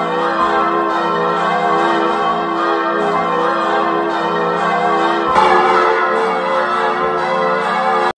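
Church bells pealing: many bell tones ringing and overlapping in a dense, steady peal that grows a little fuller about five seconds in.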